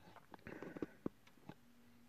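Faint clicks and light rustling of a varnished copper half-Persian jump-ring chain bracelet handled and flexed in the hands, its rings clinking, with the sharpest click about a second in.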